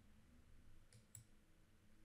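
Near silence: room tone, with two faint mouse clicks a quarter of a second apart about a second in.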